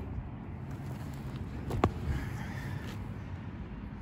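Quiet outdoor background: a low steady rumble, with one sharp click a little before the middle.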